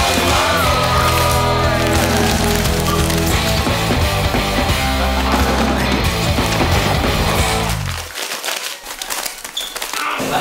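Loud backing music with a steady, heavy bass line that cuts off about eight seconds in, leaving only faint clicks.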